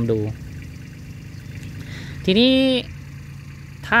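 A steady low engine hum runs in the background under a man's Thai speech, with a pause of about two seconds between his words.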